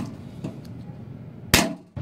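Faint, even workshop handling noise, then a single sharp impact about one and a half seconds in that dies away quickly.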